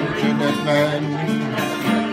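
Steel-string acoustic guitar strummed in chords, the notes ringing on, as accompaniment to a slow folk ballad.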